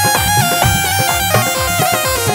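Instrumental devotional band music: a reedy, held melody line over a quick, steady drum beat.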